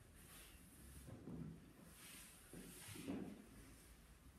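Near silence: faint room tone with a few soft sounds of two dancers moving, one swell about a second in and another near three seconds.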